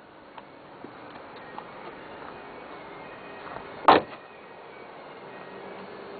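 A car door slammed shut once, about four seconds in, among soft rustling and small knocks from handling.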